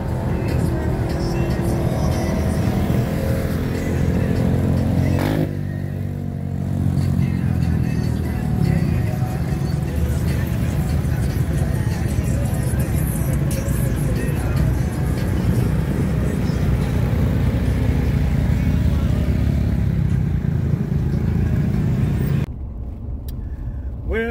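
Music playing over the engines of a convoy of ATVs and side-by-side UTVs running. The sound changes abruptly about five seconds in and again near the end.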